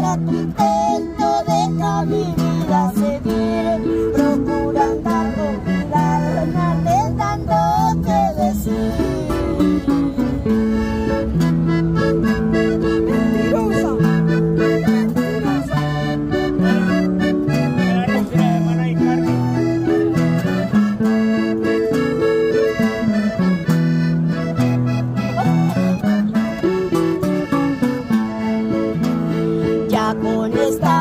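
Hohner diatonic button accordion and acoustic guitar playing the instrumental break of a Colombian corrido, the accordion carrying the melody over a strummed guitar and bass line.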